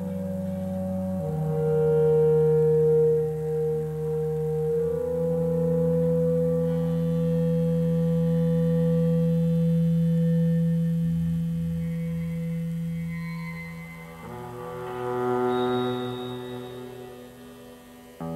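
Slow instrumental opening of a live folk song: long held, droning notes that shift to new chords a few times. It dips, swells again about fifteen seconds in, and fades near the end.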